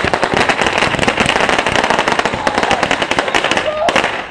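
Fireworks crackling overhead: a dense, continuous run of rapid sharp pops and bangs that stops just before the end.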